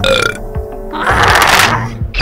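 Cartoon burp sound effect over background music: a short pitched vocal sound at the start, then a longer rough, breathy noise about a second in.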